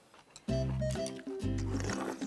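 Background music starts about half a second in, with steady chords and a strong low beat.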